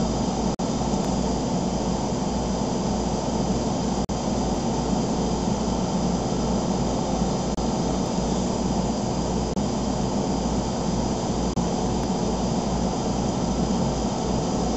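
Steady background hum and hiss, unchanging throughout and broken by a few brief dropouts.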